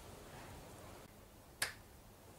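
A single sharp click about one and a half seconds in, over a quiet room.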